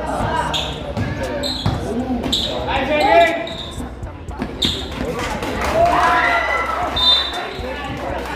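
A basketball dribbled on a concrete court, several sharp bounces during a one-on-one drive to the hoop, mixed with spectators' voices and shouts.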